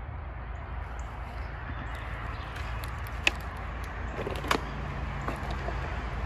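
Steady low background rumble with a faint hiss, broken by a couple of sharp clicks a little past the middle.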